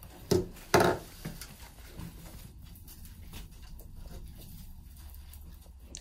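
Handling sounds at a wooden worktable: two sharp knocks in the first second, then faint rustling and small clicks as a florist works flower stems and wire.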